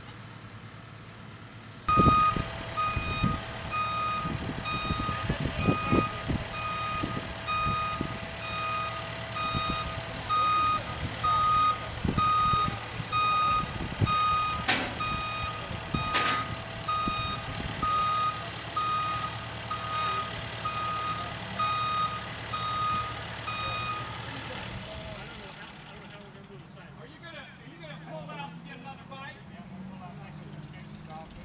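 SkyTrak telehandler's diesel engine running with its reverse alarm beeping steadily as the machine backs up, with a few knocks along the way. The engine and beeping start suddenly about two seconds in; the beeping stops a few seconds before the end and the engine noise fades soon after.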